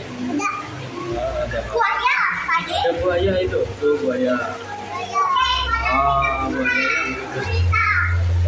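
Children's voices, calling and chattering while they play in a swimming pool, several overlapping, some high and shrill.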